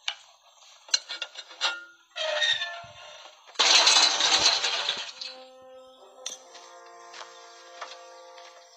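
Metal clinks at a flagpole's base bracket as its retaining pin is worked free, then the tall flagpole falls and hits the ground with a loud, drawn-out crash a little past the middle. Music with held notes comes in near the end.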